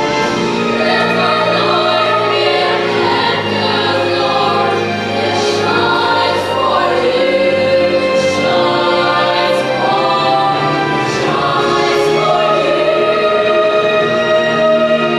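Children's choir singing live, many young voices together holding long sustained notes.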